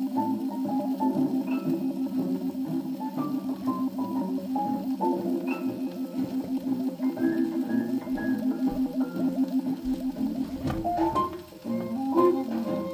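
Small-group swing jazz playing from a 78 rpm shellac record on an acoustic Victrola phonograph, heard through its reproducer and horn. The music dips briefly near the end, then comes back in.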